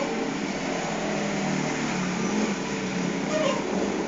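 Steady whir of an electric ceiling fan running, heard as an even background noise.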